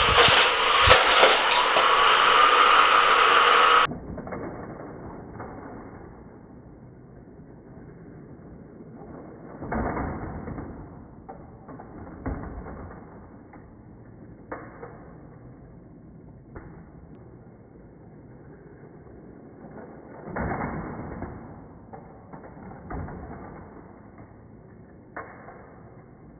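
Hot Wheels Criss Cross Crash track with its motorized booster running: a loud whirring with rapid clattering of die-cast toy cars on plastic track. About four seconds in it cuts off to a much quieter, duller steady hum with scattered knocks and clacks, the loudest near the middle and a few seconds later.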